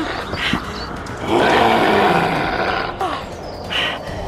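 A monster-style roar for the werewolf's attack, rough and loud, lasting about a second and a half in the middle, with shorter growls before it.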